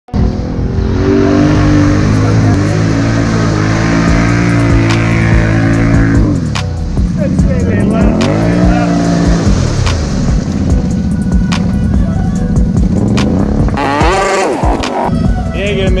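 Can-Am 570 ATV's V-twin engine held at steady high revs, then revved up and down repeatedly as it churns through deep mud. Brief shouting voices come near the end.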